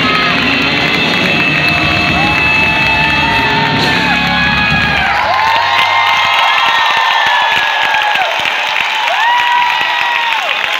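A live band plays over a cheering audience, and the music stops about halfway through, with one last low note dying out about a second later. The crowd then keeps cheering and whooping, with many short rising-and-falling calls over a steady noise of voices.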